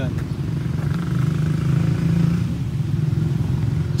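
A steady low rumble, unbroken and fairly loud, with a faint hiss above it for a second or so partway through.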